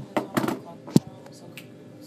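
Several sharp knocks and taps, a cluster in the first half second and one last loud knock about a second in, as the phone is handled on a desk.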